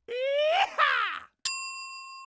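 Sound effect of a subscribe-button animation: a mouse click, then a bright bell ding that rings for under a second before cutting off. It is preceded by a short pitched sound that rises and then falls.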